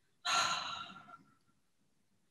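A woman's audible sigh: one breathy exhale lasting about a second, starting a moment in and fading away.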